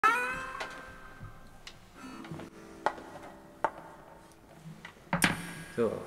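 A guitar string struck at the very start and ringing out, followed by a few quieter stray plucks and sharp handling clicks; a loud knock comes a little after five seconds in.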